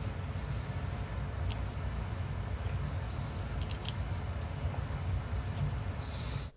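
Steady low room hum, with a few faint clicks and ticks from fingers handling the small camera and its plastic wire plug.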